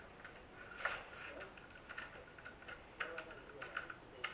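Faint, scattered small clicks and ticks from a ring light's stand being handled and screwed together.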